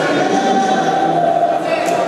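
Choral singing with long held notes, with a short click near the end.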